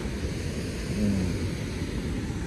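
Wind buffeting the phone's microphone, a steady rushing noise with an uneven low rumble, and a brief low hum about a second in.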